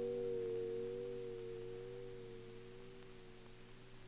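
A grand piano chord held and left to ring, its few notes fading slowly away.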